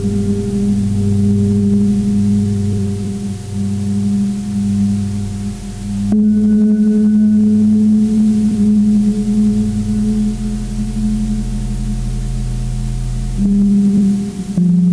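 Ambient drone music made of low, sustained, steady tones. The chord shifts abruptly about six seconds in and again near the end.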